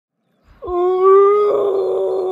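A zombie groan: one long moaning voice held steady on a single note, starting about half a second in.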